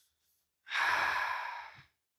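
A man's long, close-miked sigh, breathed out once and lasting about a second, starting a little over half a second in.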